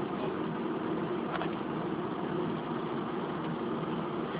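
A steady low hum with a hiss over it, unchanging throughout, with no distinct knocks or beeps.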